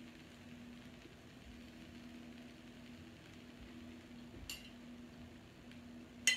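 Near silence with a faint steady low hum. About four and a half seconds in there is one light click of a spoon against the bowl.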